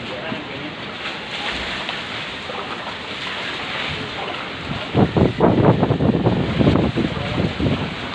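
Steady rushing noise, then from about five seconds in louder, irregular sloshing and splashing of feet wading through shallow floodwater.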